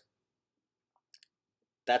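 Near silence in a pause in speech, broken by a faint, very short click about a second in; speech resumes at the very end.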